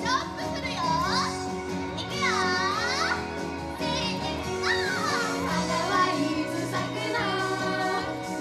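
Upbeat idol pop track played loud through PA speakers during a dance section, with high voices over the music.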